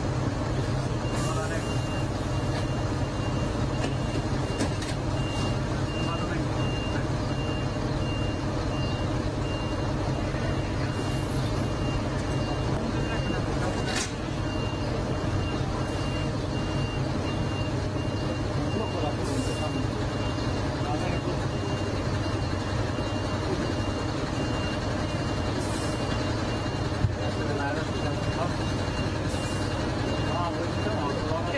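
A fire engine's diesel engine runs steadily, and a high warning beeper sounds over it at an even pace of about one and a half beeps a second. There are a few short hisses.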